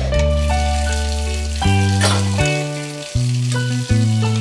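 Instrumental children's-song music with a bass line and held melody notes, over a steady hiss of cartoon shower water spraying. There is a short burst of noise about halfway through.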